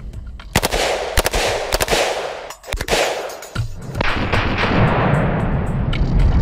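Rifle shots from an IWI Galil ACE 32 in 7.62×39mm, fired at an irregular pace with several coming in quick pairs, each with a ringing echo.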